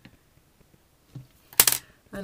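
Faint taps of a plastic modelling tool working soft sugar paste, then a short, sharp clack about one and a half seconds in as the tool is put down on the hard board.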